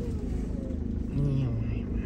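Steady low road rumble inside a moving car, with a voice heard briefly about a second in.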